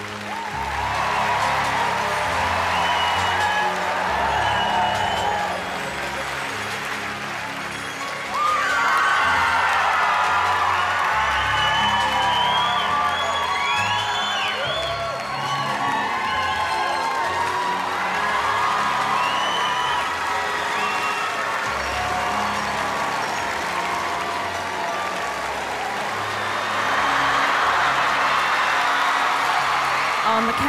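Background music with a steady bass line under a studio audience cheering, whooping and applauding. The crowd noise swells about eight seconds in and again near the end.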